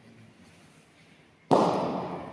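A single sharp, loud impact about one and a half seconds in, with a rattling tail that fades over about half a second.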